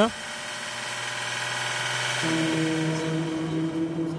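Onboard sound of an Audi Le Mans prototype running at steady speed under the safety car: a steady, even engine and drivetrain whine that grows slightly louder, with a lower hum joining about halfway.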